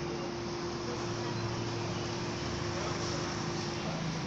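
Steady background noise with a constant hum throughout.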